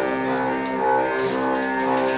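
Small acoustic band playing a slow instrumental passage, holding long sustained notes with a bowed cello.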